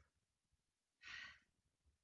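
A woman's short, breathy exhale about a second in, during exercise. Otherwise near silence.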